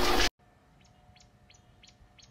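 A voice cuts off abruptly a moment in. Faint bird chirps follow, short and high, repeating about three times a second.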